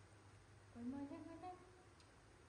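A short hum from a voice, rising in pitch, lasting under a second, about a second in.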